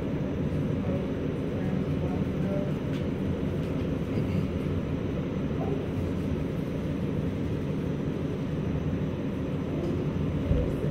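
A steady low background rumble with no clear events, like a ventilation or machinery hum.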